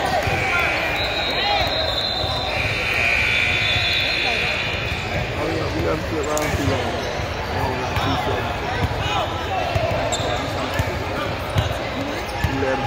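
Basketball bouncing on a hardwood gym floor during a free throw, under echoing crowd voices in a large hall. A steady high-pitched tone sounds twice in the first five seconds.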